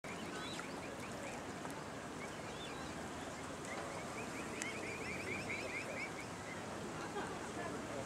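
Mute swan cygnets peeping: short, high calls scattered throughout, with a quick run of them in the middle, over a steady background hiss.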